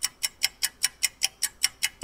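Clock-like ticking sound effect, about five even, sharp ticks a second, cutting off at the end as loud music comes in.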